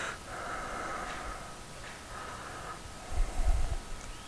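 A man breathing quietly close to the microphone over faint room tone, with a low muffled bump about three seconds in.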